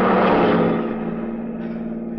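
Radio-drama sound effect of a truck passing close by: a rushing swell that peaks just after the start and fades away. Under it runs the steady drone of the car's engine.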